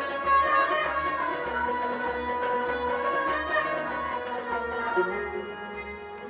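Harmonium playing a slow, sustained melodic line, its reed tones gliding from note to note, under a soft low pulse about twice a second. It grows quieter near the end.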